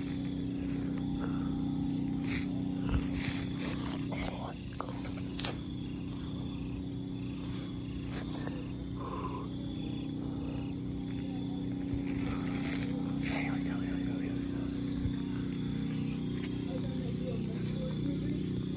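A steady low hum runs throughout, with faint voices and a few scattered clicks and knocks.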